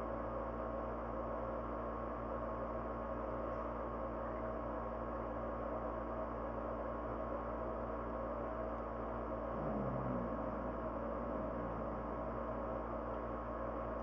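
Steady background hum with several held tones, unchanged throughout, and a short low murmur about ten seconds in.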